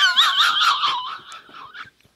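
Men laughing hard, led by a high-pitched, wavering, shrieking laugh that fades away over about a second and a half.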